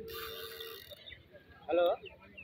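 Spinning fishing reel whirring for about a second on a rod bent under load, followed near the end by a short, loud human call.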